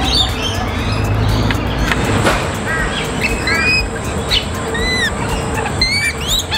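Lorikeets calling in an aviary: many short chirps and sharp squawks, some calls rising and then falling in pitch, getting busier from about two seconds in. A thin steady high tone comes in at about the same time.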